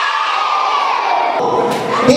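A group of children shouting and cheering together, with one long high cry held over the crowd and sinking slightly in pitch.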